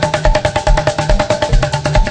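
Live gospel band playing an instrumental passage: a steady drum beat with a bass drum about twice a second, a bass line and held melody notes.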